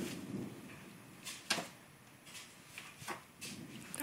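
A handful of irregular light taps and knocks over a faint steady background, the sharpest about a second and a half in.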